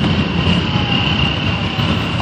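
Parade motor vehicles running as they pass: a steady low rumble with a thin, steady high whine held throughout.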